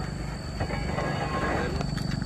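Motorcycle engine running steadily at a low, even note.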